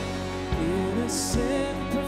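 Live worship band playing a contemporary church song: a singer's melody over acoustic guitar, bass and drums, with a steady kick-drum beat and a cymbal hit about a second in.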